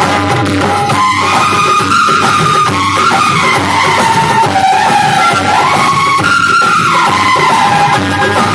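Music playing loudly through a wall of horn loudspeakers: a wavering high melody line over a steady low hum.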